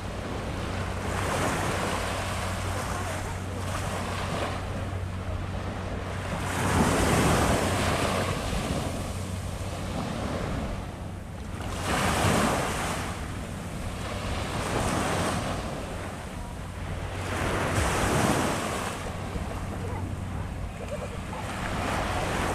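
Small waves washing up onto a sandy beach, the surf swelling and receding every few seconds.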